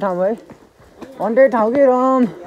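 A young man's voice in two drawn-out, sung-sounding phrases with a short pause between them.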